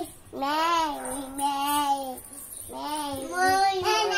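A young child singing long, drawn-out vowel notes, two held notes of about a second and a half each.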